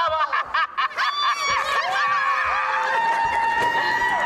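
A group laughing and cackling in quick bursts, then several long, steady, high held tones overlapping, like voices drawing out notes, from about a second in.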